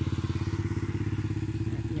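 A motorbike engine running steadily at low speed, its firing heard as a fast, even pulse.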